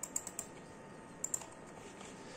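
Light clicks of a computer keyboard and mouse: a quick run of four clicks at the start, then a pair about a second later.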